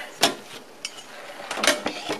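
Handling noise: a sharp click about a quarter second in, a few faint ticks, then a short rustling scrape near the end.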